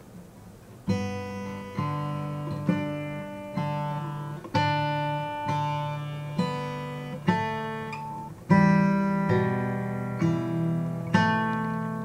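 Acoustic guitar fingerpicked slowly: single plucked notes about once a second over ringing bass notes, each note sustaining into the next. The playing starts about a second in, and there is a stronger pluck past the middle.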